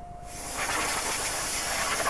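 A loud, steady, high-pitched hiss that starts abruptly just after the beginning and holds without a break.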